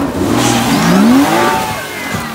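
Rally car engine revving hard, rising in pitch and then dropping away, with a rush of gravel noise as the car slides off the gravel road into the ditch and tips onto its side.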